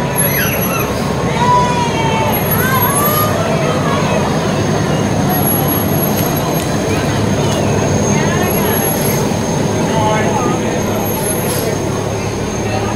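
Fire engine's diesel engine running steadily as the truck rolls slowly past close by, with spectators' voices over it.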